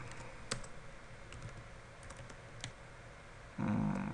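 Computer keyboard being typed on: a handful of separate keystroke clicks, spaced unevenly, with a brief low burst of sound near the end.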